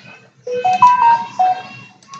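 A short electronic chime or jingle: about five clean notes stepping up and then back down, lasting about a second and a half.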